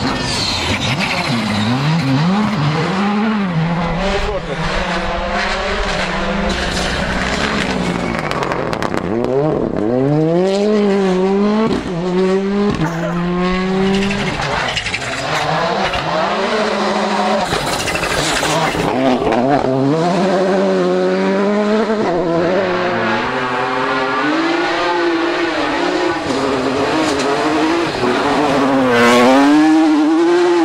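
Rally car engines at full throttle on gravel stages, one car after another. Each engine note climbs and drops repeatedly as the cars shift gears and pass by.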